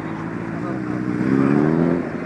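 A motorcycle engine running close by. From about a second in it is revved slightly, rising in pitch and getting louder, with people talking in the background.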